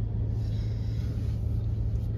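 Steady low rumble of a vehicle engine in slow traffic, with a brief hiss starting about half a second in and lasting about a second.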